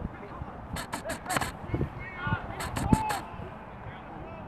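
Field sound at a rugby match: distant shouting voices from players and spectators, with two quick runs of sharp taps, one about a second in and one near the end.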